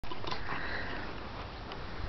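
Two dogs, a Border Collie and a Bichonpoo, snuffling and huffing as they play-wrestle, with a couple of short clicks.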